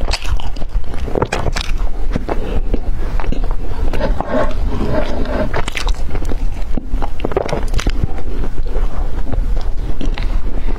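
Close-miked mouth sounds of a person chewing soft cream-filled bread coated in meat floss: irregular wet smacks and squishy clicks, over a steady low rumble.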